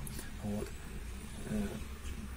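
A pause in a man's talk: two brief, quiet vocal sounds, about half a second and a second and a half in, over a steady low rumble.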